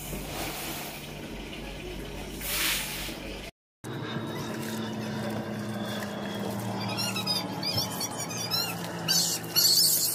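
Wheat grain being swished and rubbed by hand in a plastic tub of water, with bursts of splashing near the end. A run of short, high, squeaky chirps comes in about seven seconds in.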